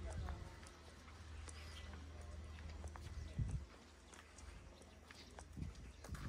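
Handling and walking noise from a handheld camera carried on foot: a low rumble that fades about half a second in, then two dull low thumps, one in the middle and one near the end, with faint scattered clicks.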